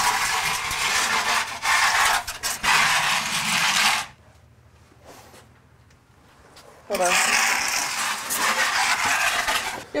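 Wooden bread peel scraping across the stone hearth of a wood-fired oven as loaves of dough are slid in. The scraping comes in two stretches of a few seconds each, with a quiet gap of about three seconds between them.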